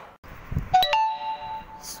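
Smartphone notification chime as a WhatsApp message arrives: a short two-note ding, the second note higher and held for under a second. It follows a soft low bump.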